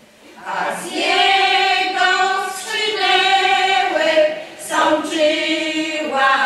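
Women's folk choir singing in Polish without accompaniment, in long held notes; the voices come in about half a second in after a short breath, with another brief breath between phrases later on.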